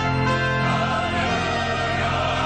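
A large mixed church choir singing an anthem in full harmony with organ accompaniment, holding chords over a steady low bass.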